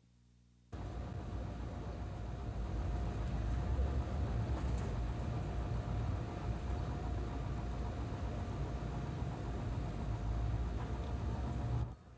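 A vehicle engine running steadily, a low rumble with a faint steady whine above it, starting abruptly about a second in and cutting off just before the end.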